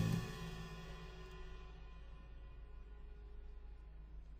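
Playback of the end of a live band recording: the final cymbal hit rings and gradually tapers away over the first half-second or so, leaving faint, steady, unwanted background noise.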